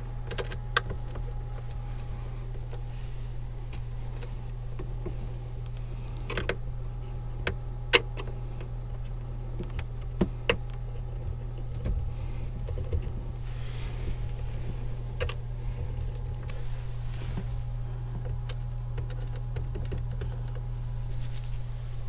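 Hand tools and wires being worked in an RV's 12-volt circuit breaker box: scattered sharp clicks and small metal taps, the loudest about eight seconds in and a close pair around ten seconds, over a steady low hum.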